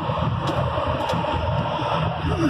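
Steady engine, road and wind noise inside the cab of a moving truck, a low rumble that holds an even level, with two faint clicks about half a second and a second in.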